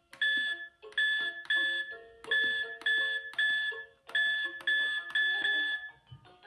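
VTech Kidisecrets electronic jewellery box beeping as its buttons are pressed to enter the secret code: short chiming electronic beeps, about two a second, in groups that grow from one beep to three and then four, each press stepping a digit of the code.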